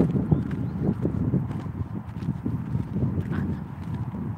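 Footsteps on dirt and dry weeds, with irregular low thumps and rustling from the handheld phone moving as he walks.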